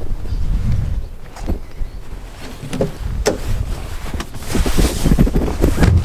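Wind buffeting a handheld camera's microphone, a low rumble throughout, with a few sharp clicks of handling in the middle and a louder rustle near the end.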